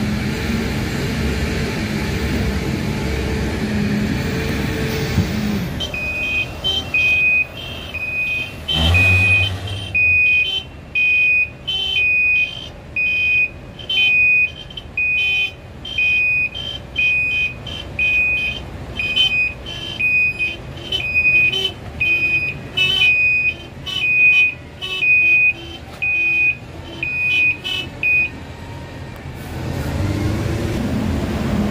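Reversing alarm of a loaded tipper dump truck, beeping about once a second as it backs up, over a low drone of heavy machinery. For the first few seconds only the low drone is heard, and there is a single low thud about nine seconds in.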